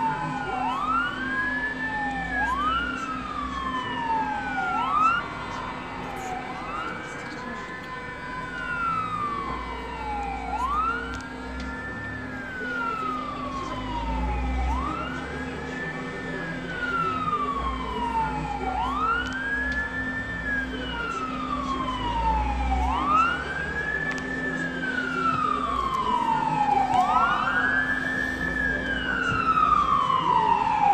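Emergency-vehicle sirens wailing in slow rising-and-falling sweeps, about one every two and a half to three seconds, with two sirens overlapping at times. They grow louder toward the end as the emergency vehicles arrive.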